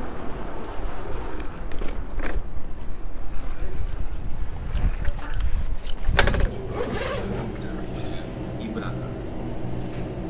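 Wind rumbling on the camera microphone as an e-bike rolls up and stops, with small rattles and a sharp knock about six seconds in. After the knock, a steady low hum indoors with faint voices.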